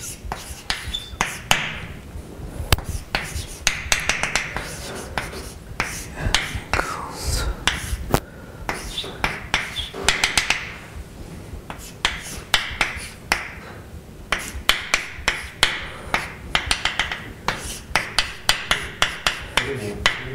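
Chalk writing on a blackboard: quick runs of sharp clicks and taps as the chalk strikes and moves across the board.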